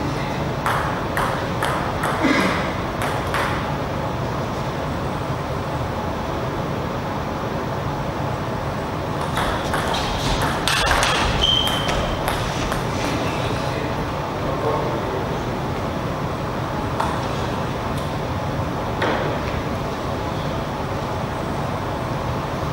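A table tennis ball clicking off paddles and the table in two rallies: quick, even clicks from about a second in, then a second, denser run near the middle, with a couple of single bounces later. A steady low hum sits underneath.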